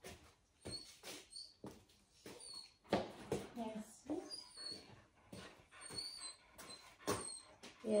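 A dog whimpering softly, with faint talk from a television and light knocks.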